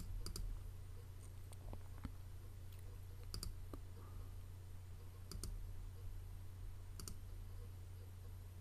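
Faint computer mouse clicks, about five of them spaced a second or two apart, over a steady low electrical hum.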